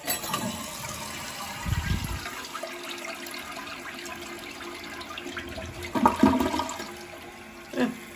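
Kohler San Raphael one-piece toilet flushing: water rushes from the tank and swirls down the bowl while the tank refills, with a louder burst about six seconds in. It is a test flush of newly fitted Wolverine Brass flush and fill valves.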